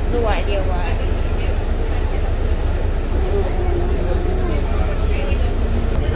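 City bus's diesel engine running with a steady low rumble, heard from inside the passenger cabin.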